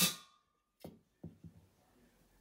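A sharp crack as a slingshot's 8.4 mm lead ball strikes a hanging aluminium drink can, which rings briefly with a thin tone. Three faint knocks follow about a second in.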